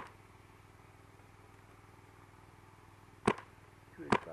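Paintball marker firing two single shots about three seconds apart, each a short sharp crack.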